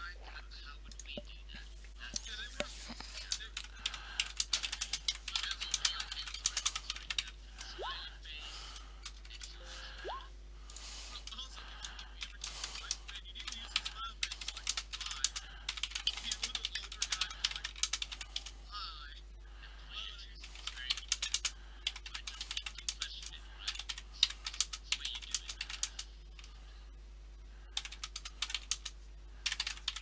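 Typing on a computer keyboard: quick runs of key clicks in bursts, broken by short pauses.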